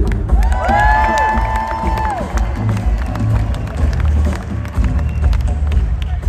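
Live rock band vamping with bass and drums while the crowd cheers and claps. Someone in the audience lets out a long held whoop in the first couple of seconds.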